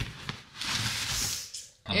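Brown packing paper and a cardboard box rustling for about a second as a boxed item is pulled out from among the paper.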